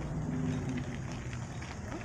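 Steady low rumble of bicycles rolling over pavement, with wind buffeting the microphone of a camera carried by a rider. A few faint ticks come in the second half.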